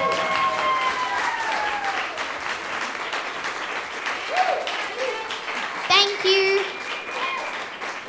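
Audience applauding, with a long cheer that slowly falls in pitch over the first two seconds, then a few short shouts and calls from the crowd midway and about six seconds in.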